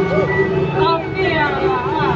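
Beiguan procession music: a pitched melody with sliding, bending notes over a steady held tone, with no percussion strikes, amid voices on the street.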